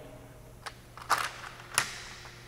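A few short, faint clicks and a brief rustle, with one sharper click near the end.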